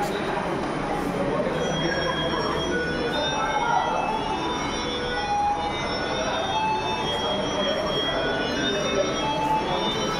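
Steady mechanical hum and hiss of a large machine hall, with many brief high squeaks scattered through it and faint voices underneath.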